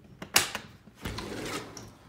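A door being unlocked and opened: a sharp latch click about a third of a second in, then about half a second of noise as the door moves open.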